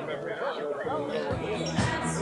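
Background voices of spectators talking over one another, with music faintly underneath and a couple of low thumps in the second half.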